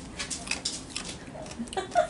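Dishes being handled on a kitchen counter: a scattering of small clicks and knocks.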